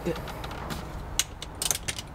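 A screwdriver tightening the screws of an aftermarket yoke steering wheel onto its hub, giving a few sharp ticks and clicks, most of them in the second half.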